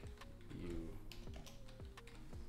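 Computer keyboard typing: several separate keystrokes as a command is entered in a terminal.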